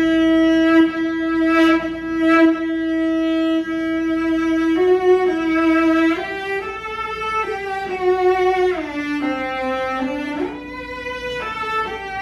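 Cello bowed: one long held note for about five seconds, then a slow melodic phrase with a downward slide between notes near the nine-second mark and a slide back up shortly after.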